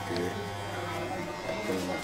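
Electric hair clippers buzzing steadily while cutting hair, with faint voices in the background.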